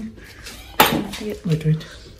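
A single sharp clink of tableware a little under halfway through, followed by a short stretch of voice.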